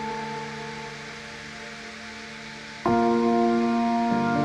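Ambient space music: a held chord slowly fades over a soft hiss, then a new chord comes in suddenly about three seconds in.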